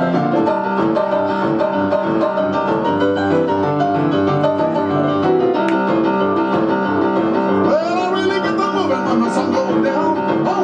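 Rock and roll piano played on a digital stage piano, with fast, continuous chords and runs. About eight seconds in, a voice cries out over the playing.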